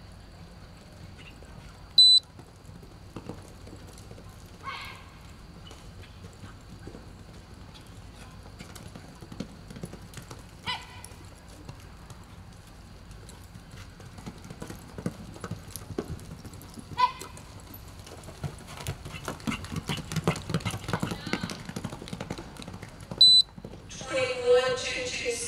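A horse galloping a barrel racing pattern on arena dirt, its hoofbeats thickening and getting louder toward the end as it runs home. Two short, loud, high beeps, one about two seconds in and one just before the end, typical of the electric-eye timer marking the start and finish of the run, with a few brief shouts in between.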